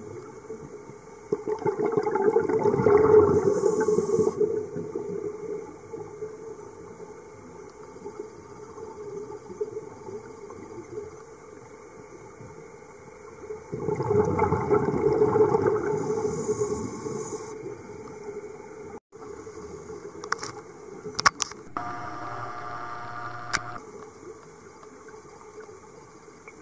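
Underwater sound heard muffled through the camera: a scuba diver's regulator exhaling, two rushes of bubbles about three seconds long, well apart, over a steady low hiss. Late on come a few sharp clicks and a brief buzzing tone.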